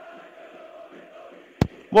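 Faint stadium crowd noise with fans chanting, picked up by a radio broadcast microphone in a pause of the commentary. A single sharp click comes about one and a half seconds in.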